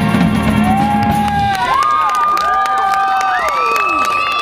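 A jazz big band with brass and drum kit holds a final chord that cuts off about a second and a half in. The audience then breaks into cheering with high whoops.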